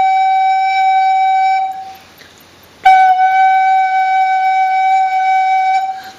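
Recorder holding one note at a steady pitch for about two seconds, then, after a short gap, the same note again a little quieter until the end. The volume changes with the breath alone while the pitch stays the same.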